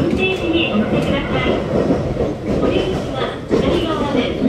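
Running noise inside a JR Kyushu 817 series electric train at speed: a steady rumble of wheels on the rails, heard from the passenger cabin.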